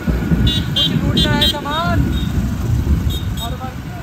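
Hero motorcycle running as it is ridden through street traffic, with wind rumble on the microphone. A few short horn toots sound between about half a second and a second and a half in.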